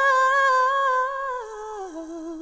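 An unaccompanied voice holds a high sung note, without words, then steps down in pitch twice and settles on a lower note with a light vibrato.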